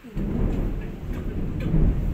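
Low rumbling handling noise from the recording phone being moved and rubbed against the microphone, starting suddenly just after the start.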